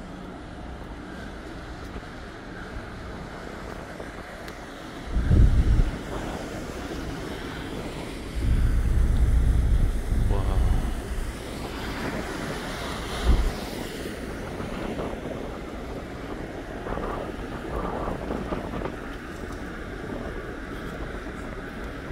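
Wind buffeting the microphone on an open ferry deck: a steady rush with heavy low gusts about five seconds in, a longer one from about eight seconds, and a short one around thirteen seconds.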